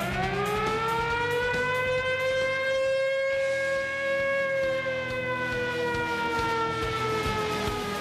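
A long siren-like wail, heard as a single pitched tone with overtones. It rises over the first second, holds, then slowly sinks in pitch, over a low background of music.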